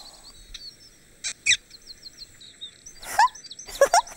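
Birds chirping and singing steadily in the background. Two short sharp sounds come about a second and a half in, and a brief falling vocal sound near the end.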